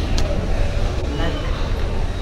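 A pause in a man's talk, filled by a steady low background rumble, with a brief faint click just after the start.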